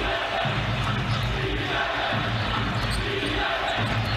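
A basketball being dribbled on a hardwood arena court, over the steady murmur of an arena crowd.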